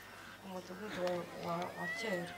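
A woman's voice through a microphone and loudspeaker, wavering in pitch and rising to a high, drawn-out cry just before the end.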